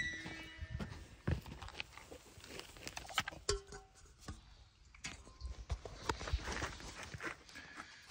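Phone microphone rubbing and knocking against clothing as it is carried, with scattered irregular knocks and scuffs.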